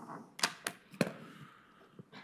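Three sharp clicks in under a second, the last the strongest, from keys or buttons being pressed on a laptop.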